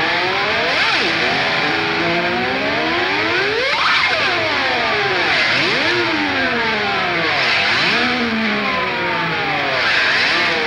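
Opening of a live blues-rock recording: electric guitar and band sound run through a sweeping phaser- or flanger-like effect, so the whole mix swoops up and down in pitch in repeated arcs over a steady wash of noise.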